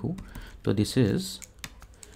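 A man's voice utters a short word or two about halfway through, with a few light, sharp clicks around it, like a stylus tapping on a pen tablet.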